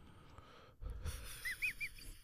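A man's quiet, breathy, stifled laugh, starting about a second in, with three short high squeaks near the end.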